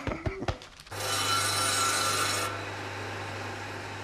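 Electric saw bench running with a steady motor hum. About a second in its blade cuts into a log with a loud ringing rasp for about a second and a half, then the saw runs on more quietly.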